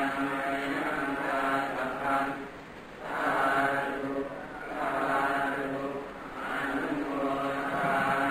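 Buddhist monks chanting in Pali, a level-pitched, monotone recitation in phrases that swell and ease every second or two.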